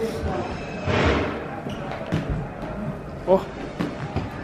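Scattered thumps and soft knocks over the echoing noise of a large room, with a short shout of 'Oh!' near the end.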